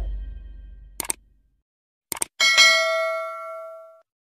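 Subscribe-button animation sound effects: a quick double click about a second in, another double click about two seconds in, then a bell ding that rings on and slowly fades. The tail of background music fades out at the start.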